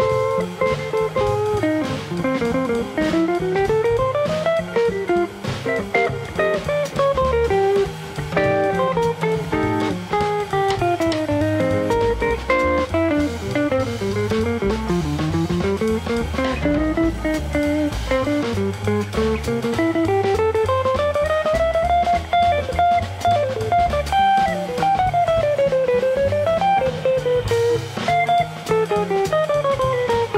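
Jazz guitar solo on a hollow-body electric guitar: fast single-note runs that sweep up and down the neck, over bass and a drum kit.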